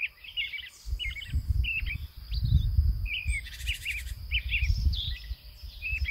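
Wild songbirds singing in a forest: short chirps and trills come again and again, several per second. An uneven low rumble runs underneath.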